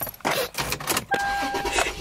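A few knocks and rustles of people getting into a car, then a car's steady electronic warning tone starts about a second in and holds for over half a second.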